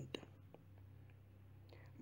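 Near silence: room tone in a pause between spoken phrases, with a faint low hum.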